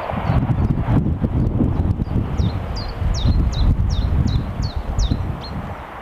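Low, irregular thudding and rumbling, the loudest sound, with a bird calling over it from about two seconds in: a run of about nine short whistled notes, each falling in pitch, roughly three a second.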